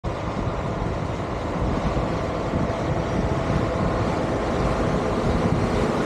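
John Deere 9R590 tillage tractor running under load as it pulls a Nighthawk CC21 coulter chisel toward the listener. It is a steady engine sound that grows slightly louder as it approaches, with low rumble from wind on the microphone.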